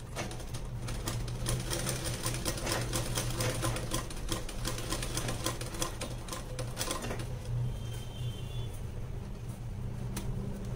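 Sewing machine with a zipper foot stitching a zip onto a silk blouse: a rapid, steady run of stitches that stops about seven seconds in.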